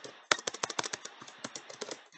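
Typing on a computer keyboard: a quick, irregular run of keystroke clicks that starts about a quarter second in.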